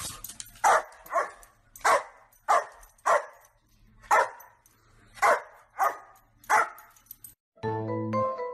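Dog barking about ten times in short, sharp barks, some in quick pairs, stopping shortly before the end. Music with clear pitched notes starts just before the end.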